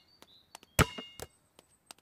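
Cartoon sound effect of a basketball being bounced by hand on a court: a few short bounces, the loudest just before a second in.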